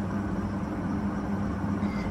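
A steady low mechanical hum with a level droning tone, unchanging throughout.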